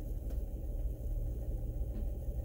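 Steady low engine and road rumble heard from inside a vehicle's cabin as it rolls slowly.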